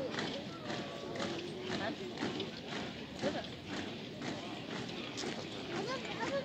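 Boots of marching parade columns striking wet asphalt in repeated footfalls, with people's voices over them.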